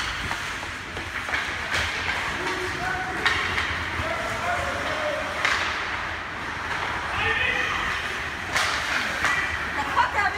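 Ice hockey play in an indoor rink: a steady wash of rink noise and indistinct spectator voices, broken by several sharp knocks of sticks and puck.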